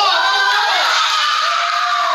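Young children's high-pitched voices shouting and calling out over one another during play.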